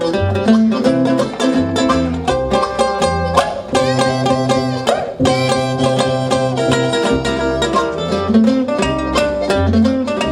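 Acoustic trio playing an old-time jug-band blues: harmonica, picked ukulele and upright bass playing together, with the bass walking underneath.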